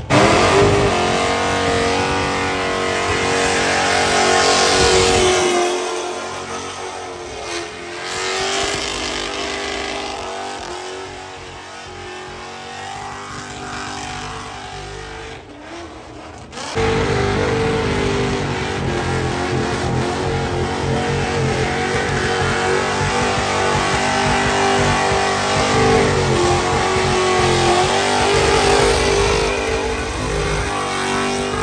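Engine revved hard and held high during a burnout, tires spinning on the pavement in a cloud of smoke. The sound drops to a lower level around six seconds in and comes back loud suddenly a little past the halfway point.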